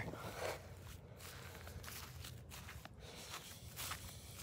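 Faint footsteps with a few soft scattered clicks and rustles of someone walking.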